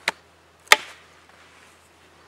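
Two sharp strikes of a blade into a dry log while a notch is being cut, about half a second apart, the second much louder.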